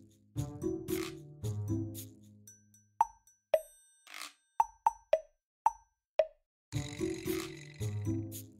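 Background music with a bass line and chords. For about three seconds in the middle it thins to a handful of quick, bubbly pops that each slide down in pitch, then the full tune comes back near the end.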